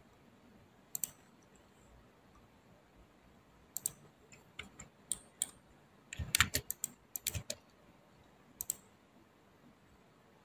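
Computer mouse clicks and keyboard keystrokes while drafting in CAD software: single clicks scattered through the clip, with a quick run of keystrokes about six to seven and a half seconds in.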